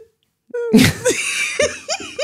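A woman bursting into laughter: after a short silence comes a sudden explosive outburst about half a second in, then a string of short laughing pulses that rise and fall in pitch.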